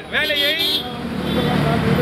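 A man speaking forcefully for under a second, then a pause of about a second filled with a low, steady rumble of road traffic.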